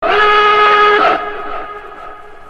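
A steady held tone of several pitches sounding together, starting sharply, loud for about a second, then fading away.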